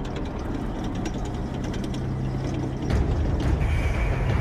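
Tracked armoured vehicle on the move: the engine runs under a steady low rumble with a rapid clatter of tracks. It grows louder about three seconds in.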